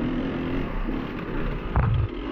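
Enduro dirt bike engine running at low revs on a rough trail, its pitch wavering with the throttle. A sharp knock near the end.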